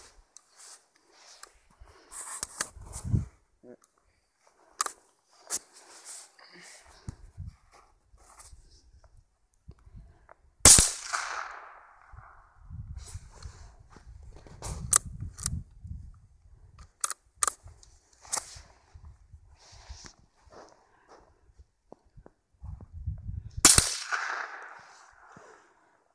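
Two sharp .22 LR rifle shots from a Savage Mark II, about thirteen seconds apart and the loudest sounds, each followed by a short echo, with several lighter clicks and knocks between them. The exploding target in the cereal box is not set off.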